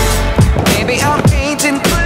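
Aggressive inline skate sliding along a round metal rail in a backside grind, over music with deep, falling bass hits.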